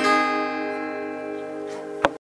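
Acoustic guitar's closing chord, strummed once at the start and left to ring out, fading slowly at the end of the song.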